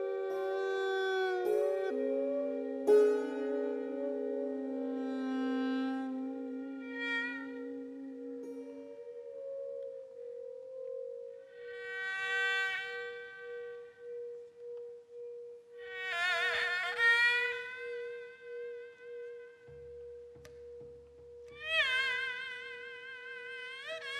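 Slow Korean traditional ensemble music: a haegeum (two-string fiddle) plays long notes that slide and waver in pitch over a steady, gently pulsing ring held from a brass jeongju bowl. Sustained saenghwang (mouth organ) chords sound in the first part and fade out about ten seconds in.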